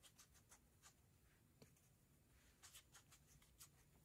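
Near silence, with faint, irregular light taps and scratches of a flat paintbrush dabbing watery paint onto watercolour paper.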